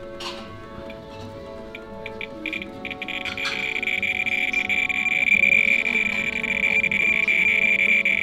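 Handheld radiation survey meter (Thermo Scientific RadEye B20) clicking: scattered clicks speed up into a steady buzz from about three seconds in and grow louder as it is held against a stack of Fiesta ware plates. It is picking up a radioactive, uranium-glazed plate in the stack, at about 6,500 counts per minute. Background music plays throughout.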